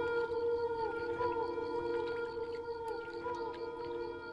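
Ambient drone music: layered sustained tones held steady, with short swooping glides rising and falling every couple of seconds and faint high chime-like ticks.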